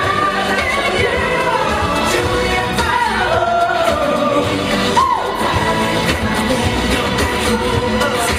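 Live K-pop song: a male voice sings into a handheld microphone over a pop backing track.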